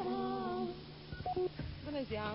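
A person's voice holding a hummed, drawn-out note for about half a second, then a couple of short vocal sounds, over a steady low hum.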